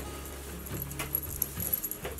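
Faint jingling and a few small clicks of the metal fitting on a baby goat's breakaway collar, moving as a hand scratches under the kid's chin.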